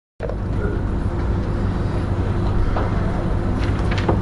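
A steady low hum and rumble, with faint voices near the end.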